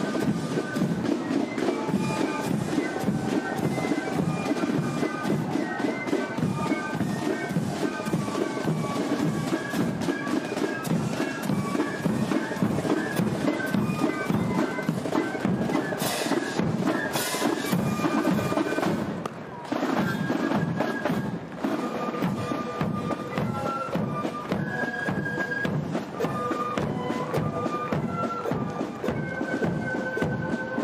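Military marching band playing a march: a high, shrill wind-instrument melody over a steady marching drum beat.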